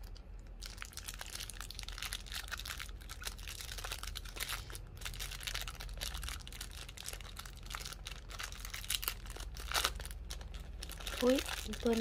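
Thin clear plastic bag crinkling and tearing in the hands as a small toy figure is unwrapped, a busy crackle with many small clicks.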